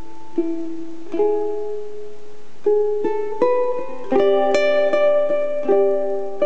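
Solo ukulele played fingerstyle: a slow melody of single plucked notes left to ring, filling out into fuller plucked chords about four seconds in.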